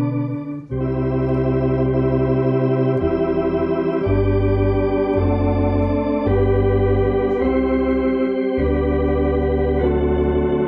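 Tokai T1 Concert electronic organ playing a hymn in sustained chords over a bass line, on a drawbar registration that imitates a Hammond tonewheel organ. The sound breaks off briefly about half a second in, then the chords move on, changing about once a second.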